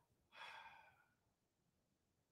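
A single short, faint sigh or breath out by a man, about a third of a second in and lasting under a second, in otherwise near silence.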